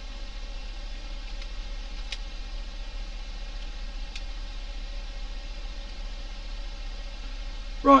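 Steady low electrical hum with a faint hiss, and a couple of faint ticks about two and four seconds in.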